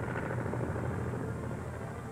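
Early propeller aircraft's piston engine running steadily with a rapid rattling beat, heard on an old 16mm film soundtrack.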